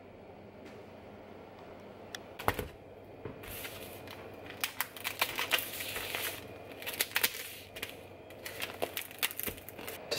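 Knife cutting open the plastic film on a foam tray of ground beef: scratchy crinkling of the wrap with many small clicks, after a single sharp knock about two and a half seconds in.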